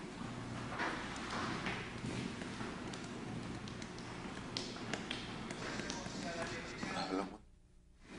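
Faint, distant voices and room noise with a few light taps and knocks. The sound drops out to near silence about seven seconds in.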